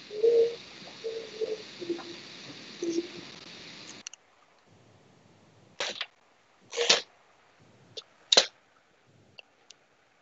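A hissy open call microphone with a few short low hums cuts off abruptly about four seconds in. Then come four sharp clicks, such as a mouse or microphone being handled over the call.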